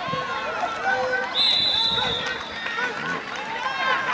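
Many voices shouting and calling out over one another from spectators and the sideline, with a referee's whistle blowing one steady blast of about a second, a second and a half in, as the ball carrier is tackled and the play is whistled dead.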